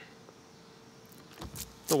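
The 2013 Ford Fusion's windshield wipers kicking on by themselves, a brief mechanical sound of the wiper motor and blades starting about a second and a half in. They were triggered by water poured onto the rain-sensing wiper sensor, a sign that the automatic wipers are working.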